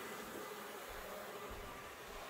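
Faint, steady whir of an HO-scale IHC Premier GG-1 model locomotive's two electric motors running on the track.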